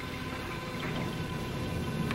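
Steady background hiss with a faint hum, with no distinct event.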